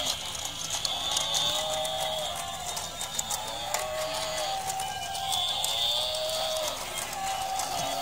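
Battery-operated walking toy animals running together: a tinny electronic sound chip gives repeated synthesized mooing calls, about one a second, over music and the fine clicking of the toys' plastic gear mechanisms.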